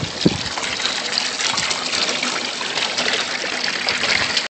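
Water pouring steadily from a PVC pipe outlet and splashing into a shallow pool in a plastic aquaponics tub during its first fill.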